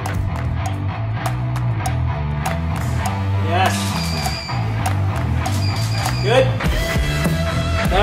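Background music with a prominent bass line, the low notes shifting every second or so.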